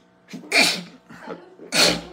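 A man sneezes twice, about a second apart, both sneezes loud.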